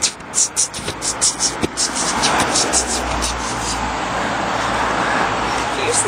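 A quick run of short, sharp hissing clicks, about five a second, for the first two seconds. Then a car passing on the road, its engine and tyre noise swelling and easing over several seconds.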